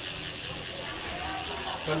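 Mavic rear wheel of a road bike spinning freely on its hub, a steady whirring; the wheel spins very smoothly.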